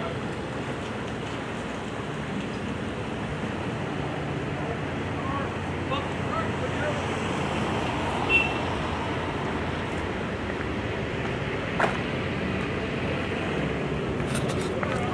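1954 Canadian Car-Brill T48A electric trolley bus driving slowly past, a steady low hum with road noise, with a sharp click about twelve seconds in.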